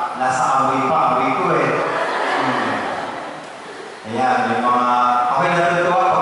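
A priest's voice chanting through a handheld microphone in long, held notes. It drops to a softer, unpitched stretch in the middle, then the chanting comes back loud about four seconds in.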